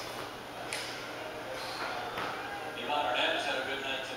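Indistinct talking in a room, louder in the second half, with a sharp tap about three quarters of a second in and another a little after two seconds.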